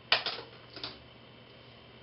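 Plastic hair clips clicking as they are handled: one sharp click just after the start, then a few lighter clicks within the first second.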